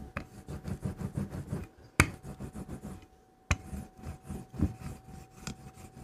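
Wooden rolling pin rolled back and forth over a textured placemat on a slab of clay, a run of low rubbing strokes that pauses briefly in the middle. Two sharp knocks come about two seconds in and a second and a half later.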